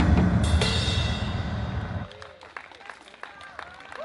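Final unison hit of Korean barrel drums and a crash cymbal over a backing track, closing a drum medley about half a second in. The cymbal rings and fades over about a second and a half, then it drops off sharply to a much quieter stretch.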